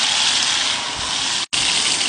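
Lamb cutlets searing in hot olive oil in a pan: a loud, steady sizzle that breaks off for an instant about one and a half seconds in.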